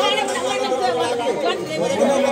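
Several men talking at once in overlapping chatter, with no other distinct sound.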